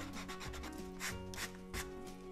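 Tombow Mono eraser rubbing back and forth on a stretched canvas to erase pencil lines, in a run of scratchy strokes that grow stronger in the second half.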